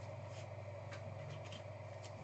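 Quiet room tone with a steady low hum, and a few faint light ticks and rubs from a trading card being handled in the fingers.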